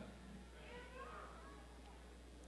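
Near silence with a faint, distant wavering voice for about a second, starting about half a second in.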